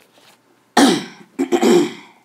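A person coughing twice, loud: one cough about three quarters of a second in, then a longer one near the end.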